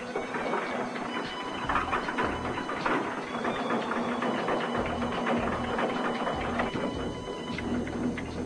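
A Lance missile launcher's elevating mechanism running as it raises the missile: a steady mechanical hum with a fast, even clatter of clicks.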